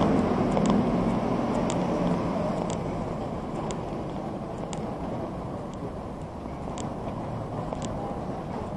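Vehicle running through city traffic, its engine and road noise easing off, with a turn signal ticking about once a second as it turns the corner.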